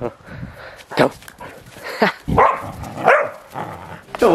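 A dog barking several times in short, sharp barks, excited during play with a rope tug toy.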